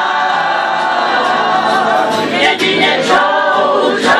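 A group of people singing a song together in chorus, many voices held on long, steady notes.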